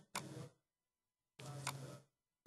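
Faint, distant speech from an audience member asking a question away from the microphone. It is heard as two short fragments that start and stop abruptly, with dead silence between.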